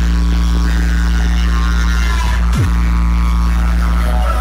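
A large DJ sound system's bass speakers playing a long, held deep bass note during a bass sound test. About two and a half seconds in, a fast falling pitch sweep drops into the same low bass, which holds on loud and steady.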